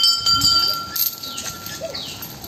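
A small metal bell hanging from a walking elephant's harness, struck as she steps, about twice a second apart, its ring carrying on between strikes.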